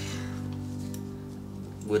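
Background acoustic guitar music, a chord held and ringing.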